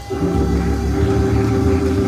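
Church organ holding a sustained chord with deep bass notes underneath. The chord comes in just after a brief dip at the start and is held steady.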